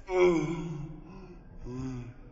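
A person's wordless vocal exclamation, drawn out and falling in pitch, then a second short one near the end.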